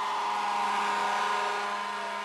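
Fire truck engine running: a steady drone with a level hum over noise, easing slightly toward the end.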